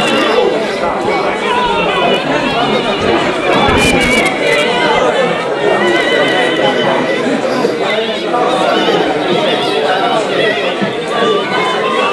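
Crowd chatter: many people talking at once, their voices overlapping.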